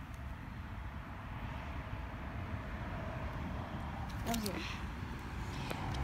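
Steady low outdoor rumble, with a brief faint voice about four seconds in.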